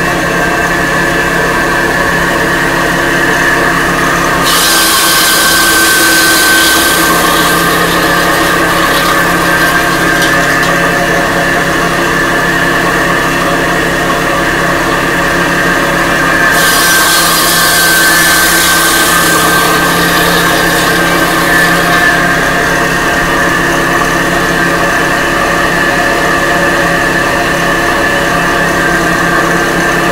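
A stone-cutting machine with a 15-inch circular blade, belt-driven and water-fed, running steadily with a whine. Twice, about four seconds in and again about sixteen seconds in, the blade bites into a clay brick for several seconds, adding a harsher, higher grinding noise as it slices off a thin cladding strip.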